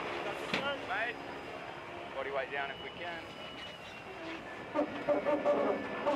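Indistinct voices in short bursts over a faint, steady mechanical hum with a thin whine.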